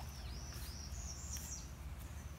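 A bird chirping, a quick run of short rising, warbling notes, over a steady low hum.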